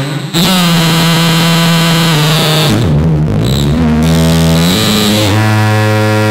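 Behringer Neutron analog synthesizer playing buzzy sustained notes. It cuts out briefly at the start, then holds a long note, slides down to lower, grittier notes a little under halfway, and settles on a new low held note about five seconds in.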